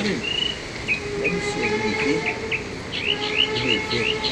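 Small birds chirping: a run of short, high rising chirps, several a second, over a faint steady hum.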